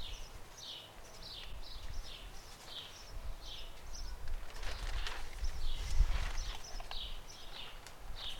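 A small bird chirping over and over in short, high, falling notes a few times a second, over a low rumble. A few clicks and rustles of cable connectors being handled come about five to six seconds in.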